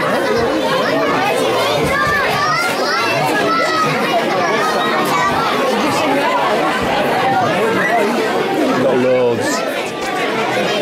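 Many young children talking and calling out at once, a steady, busy babble of high voices.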